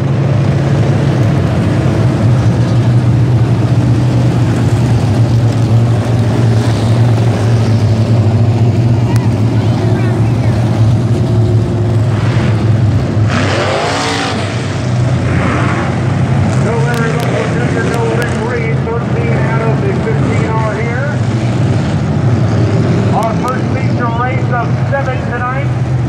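A field of dirt-track street stock race cars running together at low speed, a steady deep engine drone with no hard revving, while the cars sit or crawl under caution waiting for the green flag.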